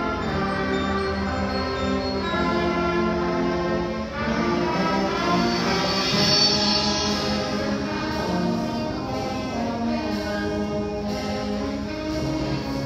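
Middle school choir, string orchestra and band performing together: voices over strings and brass. The music dips briefly about four seconds in, then swells louder.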